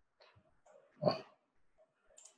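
A man's single short hesitant 'uh' about a second in, with near silence around it.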